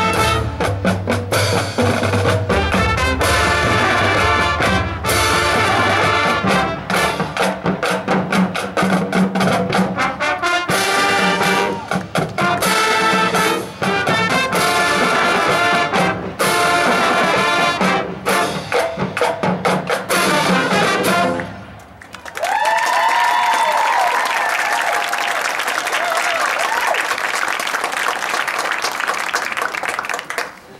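Marching band playing: brass section with drums in a jazzy tune that stops about two-thirds of the way through. Audience applause follows, with a brief cheer.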